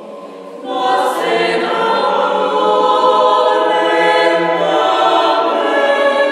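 Mixed choir singing a cappella: a quiet passage swells into a loud, full entry of all voices just under a second in, then holds.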